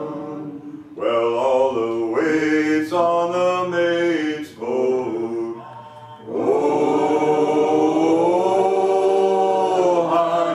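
A man and a woman singing a sea song together without accompaniment, in short phrases at first, then holding one long note from a little past the middle to the end.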